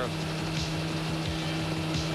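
Steady engine and rotor noise of a news helicopter heard from inside its cabin, an even drone with a low steady hum and no shots standing out.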